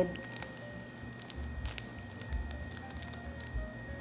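Faint, scattered crinkling of a thin clear plastic sheet being folded by hand around a piece of soft dough.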